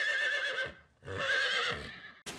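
Horse whinnying in two wavering calls, the second starting about a second in.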